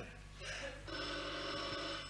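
A telephone ringing: a steady ring that comes in faintly about half a second in and sounds fully from about a second in.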